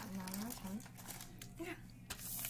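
A girl's short spoken words, with a plastic snack wrapper crinkling as it is handled.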